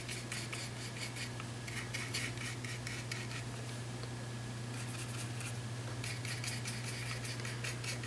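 Faint scratching and light ticks of a small paintbrush picking up acrylic paint from a palette and dabbing it into the ear of a plastic figure, over a steady low hum.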